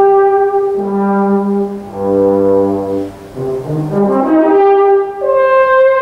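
Solo euphonium playing long held notes, then a quick rising run that ends on a long high note about five seconds in.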